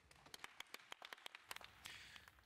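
Faint, scattered hand clapping from a conference audience: sharp, irregular claps, several a second.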